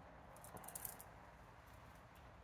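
Near silence, broken about half a second in by a brief scratchy rustle of a hand rubbing through hair close to the phone's microphone.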